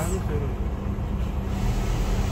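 Truck's diesel engine running steadily inside the cab, a low rumble with a constant hum, as the truck creeps along in slow traffic.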